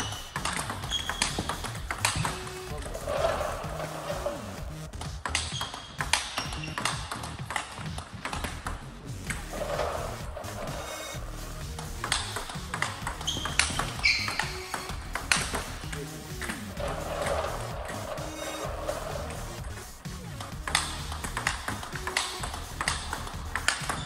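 Table tennis rally in a fast, irregular rhythm: the plastic ball clicking off the rubber of the bat and bouncing on the table, the player mostly blocking. Background music with a beat plays underneath.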